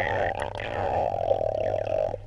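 Steady, muffled underwater noise of a swimming pool, heard through a camera's waterproof case held under the water near a swimmer.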